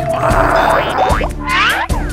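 Children's cartoon background music with a steady beat, overlaid by cartoon sound effects: a short swish in the first second, then a quick falling-pitch springy effect about one and a half seconds in.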